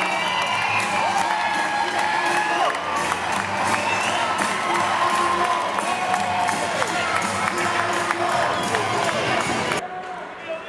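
Ice hockey arena crowd cheering and shouting after a goal, with music playing over it. It cuts off suddenly near the end.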